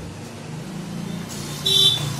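Steady low hum with one short, high toot of a vehicle horn about three-quarters of the way through, the loudest sound.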